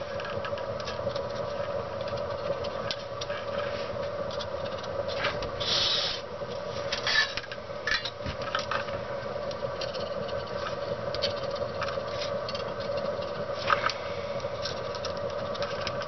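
Small scratching, ticking and clicking sounds of a soldering iron working solder onto the back pads of a thin solar cell, and of the cell being handled, over a steady hum. A short hiss comes about six seconds in.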